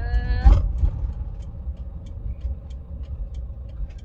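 Camper van driving at road speed, its engine and tyre noise heard from inside the cab as a steady low rumble.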